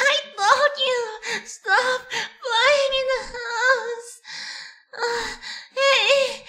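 A man's voice moaning lines of a script in a high-pitched, drawn-out way, one gliding moan after another with short breaks between them.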